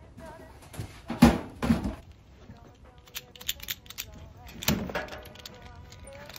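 Handling noises of a cupboard and a leather bag: two knocks a little after a second in, then a run of clicks and rattles and another knock near the five-second mark, over a song with a singer playing softly under it.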